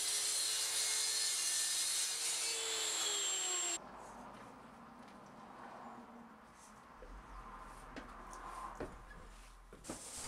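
Erbauer track saw cutting through a sheet of thin plywood: a steady motor whine over a hiss of cutting, which cuts off suddenly about four seconds in. After that, only a few faint knocks.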